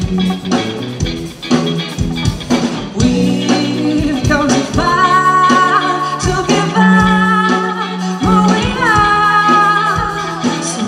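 Live rock band playing: electric guitar, bass guitar and drums under a female lead singer, who holds long sung notes in the second half.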